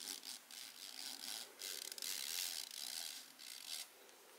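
Ink-soaked string being pulled out from between a folded sheet of paper pressed flat under a hand: a rubbing scrape of string against paper in uneven strokes, which stops shortly before the end.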